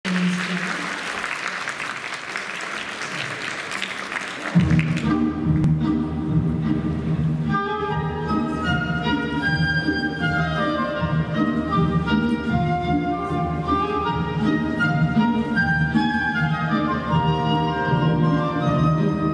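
Audience applause for about the first four and a half seconds, then an instrumental piece begins, with bowed strings playing a melody over sustained low notes.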